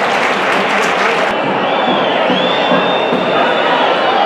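Football stadium crowd noise: a steady din of fans with clapping and cheering. After an abrupt change about a second in, several long, high whistles sound over the crowd.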